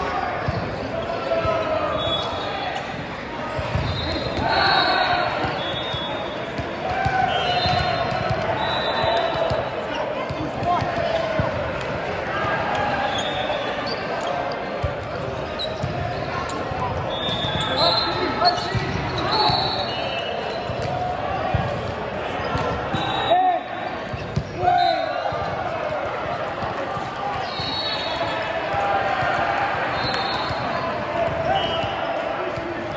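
Echoing sports hall during a volleyball match: sneakers squeak briefly on the court floor again and again, balls thud, and players' and spectators' voices call out over the hall's reverberation.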